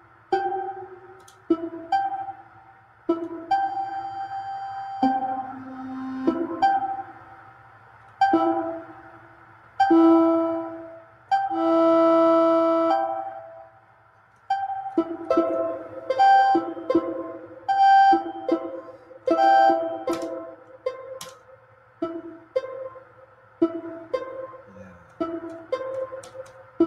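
Eurorack modular synthesizer sequenced live from a monome Teletype, playing short pitched electronic notes that start sharply and die away in an uneven rhythm, with a longer held tone about eleven to thirteen seconds in.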